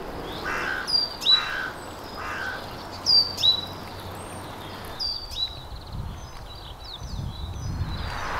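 A crow cawing three times in the first few seconds, with other songbirds giving short, high, falling whistled notes throughout. A low rumble comes near the end.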